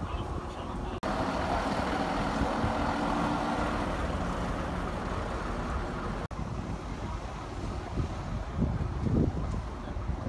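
Vintage double-decker bus's engine running steadily close by. The sound breaks off abruptly about a second in and again about six seconds in.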